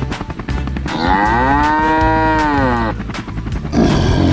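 A cartoon cow sound effect: one long moo, rising and then falling in pitch, starting about a second in and lasting about two seconds, over background music with a steady beat.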